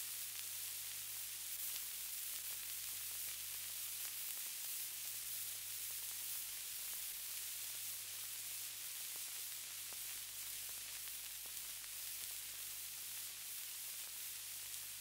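Faint steady hiss with occasional small crackles over a low hum: the background noise of an old audio recording playing between spoken passages.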